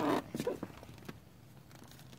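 Brief rustling and a few short, soft sounds from a dog close to the microphone in the first half second or so, then only faint sound.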